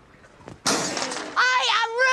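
A sudden crash with a shattering edge about half a second in, dying away quickly. Then a woman lets out a long, high, wordless cry.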